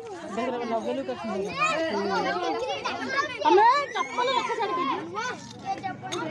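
Several children talking and calling out over one another.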